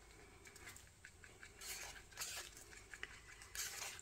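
A stir stick mixing magenta-tinted epoxy resin in a paper cup: faint scraping and light taps against the cup wall, a little louder in the second half.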